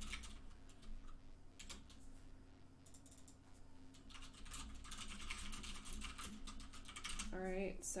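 Computer keyboard typing: short runs of rapid keystrokes with brief pauses between them.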